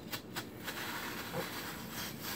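Stainless steel squeeze-grip melon slicer cutting through watermelon flesh: a few faint clicks, then a soft scraping as the blades are pulled through the melon.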